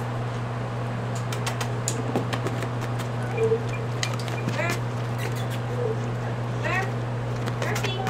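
Steady low hum of room equipment, with scattered light clicks and taps as a large dog moves and sniffs right up against the microphone, and a few short high squeaks.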